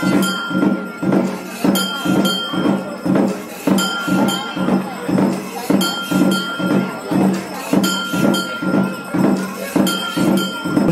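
Rhythmic temple music during an aarti: drum beats about twice a second, with a bell ringing out about every two seconds.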